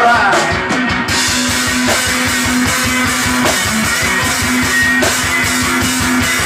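Live blues-rock band playing loud: a resonator guitar over a drum kit hit fast and hard, with a held low note under the beat.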